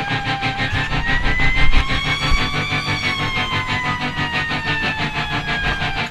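Fire engine siren winding up slowly and then falling again in one long wail, over the low rumble of the truck's engine, with background music.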